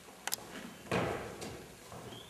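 Two quick clicks, then a single dull thump about a second in: wooden furniture knocking as a child shifts the piano bench and footstool at a grand piano on a stage floor.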